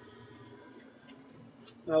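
A quiet pause in a man's talk: a faint steady background hum with a light hiss, then his voice starts again near the end.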